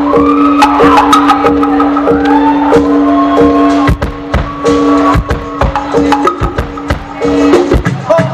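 Live band playing: a held low note runs under a short higher figure repeating about every half second, with percussion hits that grow denser in the second half.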